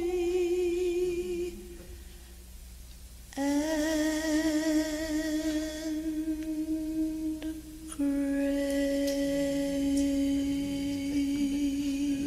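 A single voice humming a slow hymn tune in long held notes with vibrato, each held for several seconds and stepping down in pitch, with a short pause about two seconds in.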